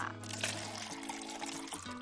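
Background music with steady held notes, over the soft sound of yogurt being poured from a bottle into a glass bowl.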